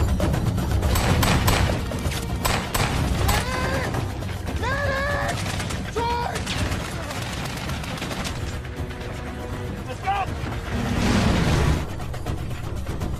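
Film battle sound: rapid bursts of rifle and machine-gun fire, densest in the first three seconds, with shouted voices in the middle and near the end over a steady low rumble and music.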